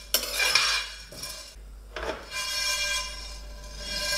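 A metal spoon scraping around a stainless steel frying pan, stirring toasting whole black peppercorns. About two seconds in, a knock sets the pan ringing for a couple of seconds.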